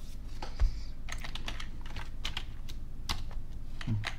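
Typing on a computer keyboard: irregular keystroke clicks as a short command is typed and entered, with one low thump about half a second in.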